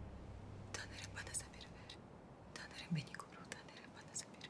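A woman whispering a prayer in two short breathy phrases, as low music fades out at the start.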